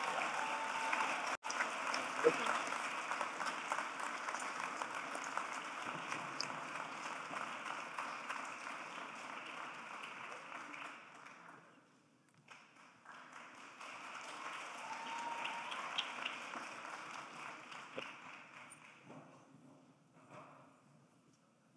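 Audience applauding. The applause breaks off briefly about twelve seconds in, resumes more quietly and dies away near the end.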